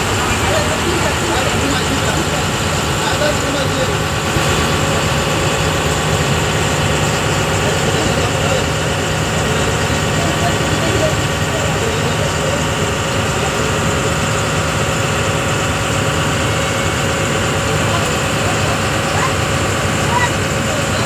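A river ferry's engine running steadily underway, a continuous drone heard from inside the passenger deck, with passengers talking over it.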